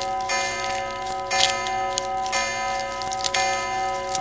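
Cartoon pendulum clock striking the hour with bell-like chimes. There is one stroke about every second, and each rings on into the next. It is striking six o'clock.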